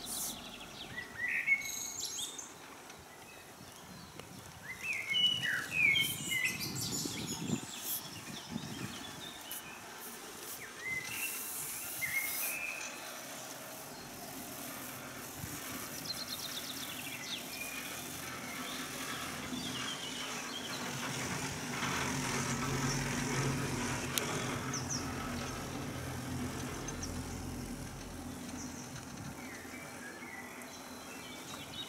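Songbirds chirping and calling in the trees, short chirps scattered through the first half over a steady background hiss. In the second half a low hum and hiss swell up and then ease off.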